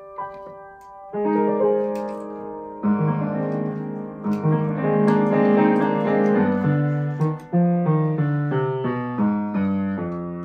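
Grand piano played solo. A held chord fades over the first second, then a new phrase enters and swells. In the second half, chords change about every half second over a stepping bass line.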